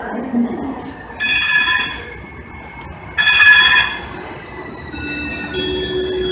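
Siemens S200 LRV4 light-rail train pulling into an underground station platform, rolling over a steady rumble. Two brief, loud high-pitched ringing tones sound about a second and three seconds in, and fainter high squealing follows as the train rolls alongside the platform.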